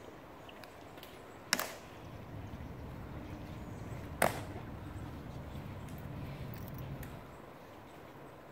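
Two sharp cracks about two and a half seconds apart, each with a short ring after it, from the Tomb sentinels' rifle drill during the changing of the guard.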